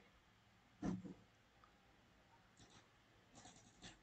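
Near silence: room tone, broken about a second in by one short, faint vocal sound, with a few faint clicks near the end.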